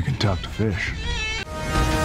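A man's voice speaking a short line of film dialogue, then about a second and a half in, music with long held tones begins.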